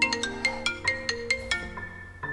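Mobile phone ringtone: a quick marimba-like melody of struck notes starting suddenly, over soft sustained background music.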